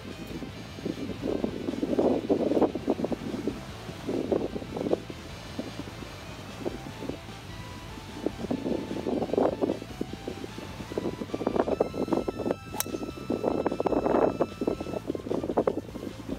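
Background music over wind rumble on the microphone, with one sharp crack about three-quarters of the way through: a driver striking a golf ball off the tee.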